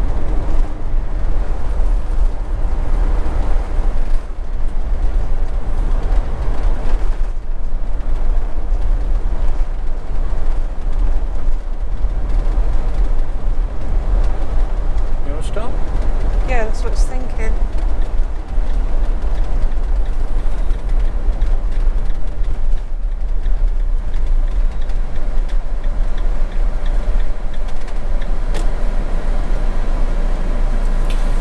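Steady road and engine noise inside a motorhome's cab while it drives along at speed, with a deep constant rumble underneath.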